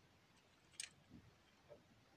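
Near silence broken by one faint click of plastic LEGO pieces being handled, a little under a second in, followed by a couple of fainter soft knocks.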